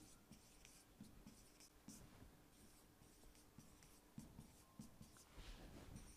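Faint ticks and scratches of a stylus pen writing on the glass of an interactive touchscreen board, a few short strokes spread across otherwise near silence.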